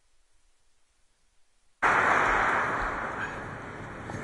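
Near silence for nearly two seconds, then an audience applauding, which starts abruptly and slowly dies down.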